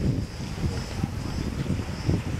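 Wind buffeting the camera microphone: an irregular low rumble that rises and falls in gusts.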